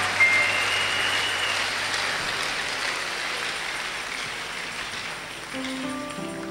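Large congregation clapping, a clap offering, the applause slowly dying away.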